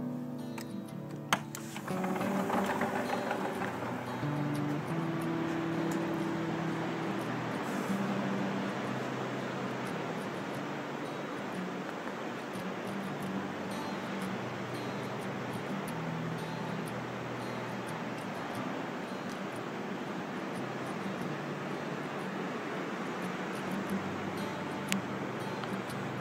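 Even rushing wash of ocean surf with faint music playing underneath it; a single sharp click about a second in.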